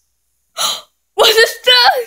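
A young child's voice: a short breathy gasp about half a second in, then two high-pitched vocal sounds, the second bending up and down in pitch.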